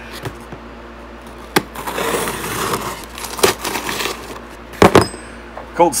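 A folding knife with a broken back spring and a loose blade slitting packing tape on a cardboard box, with a rasping cut about two seconds in. Sharp clicks and knocks of the knife against the box run through it, the loudest near the end.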